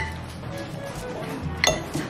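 A metal fork clinking against dinnerware twice, once at the start and again about a second and a half later, each with a short ring.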